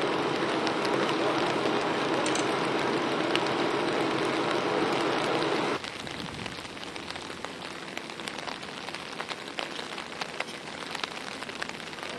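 Steady rain noise. For the first six seconds it is louder with a low hum under it, then it drops suddenly to quieter rain with many small drops ticking close by.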